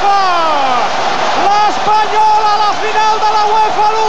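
A man's voice shouting long, drawn-out cries celebrating a goal, one falling near the start and then held high with brief breaks, over the steady noise of a cheering stadium crowd.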